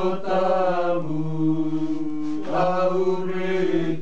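Voices chanting a sung prayer of the Mass in long, held notes, with a new phrase beginning about halfway through.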